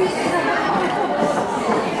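Many voices chattering at once in a hall, an audience talking among themselves with no single clear speaker.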